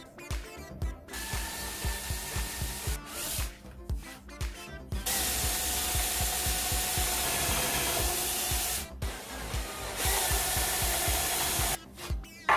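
Cordless drill boring holes into a wooden board, running in several runs of a few seconds with short stops between them, the longest in the middle. Background music with a steady beat plays underneath.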